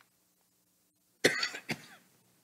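A person coughing: two sharp coughs in quick succession a little over a second in, after a quiet stretch.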